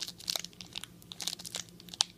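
Thin plastic card sleeve crinkling and crackling in short irregular bursts as fingers handle an autographed trading card in it.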